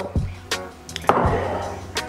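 Background music with three sharp knocks, a glass liqueur bottle being handled and set down on a granite countertop. A short noisy swell follows the last knock about a second in.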